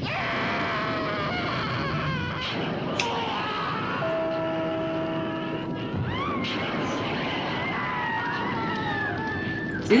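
Horror film soundtrack at its climax: dramatic music with voices crying out and screaming, some long held notes in the middle.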